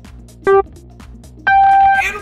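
Race-start countdown beeps: a short beep about half a second in, then a long go tone an octave higher from about one and a half seconds, over background music with a light ticking beat.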